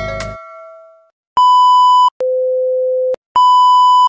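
The tail of an electronic intro jingle fades out, then a test-tone sound effect plays: a short high beep, a longer lower tone and another high beep, each one steady and cut off sharply, as used with a TV color-bars glitch transition.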